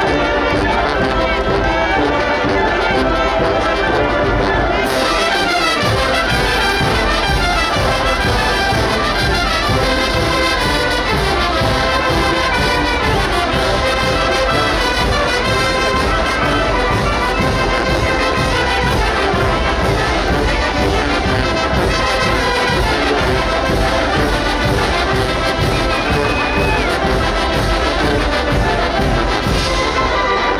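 Oaxacan wind band playing a dance tune, with trumpets and trombones carrying it. About five seconds in the music grows fuller, with a steady beat underneath.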